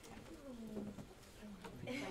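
Faint, indistinct murmuring voices: a few soft low syllables that fall in pitch, with no clear words.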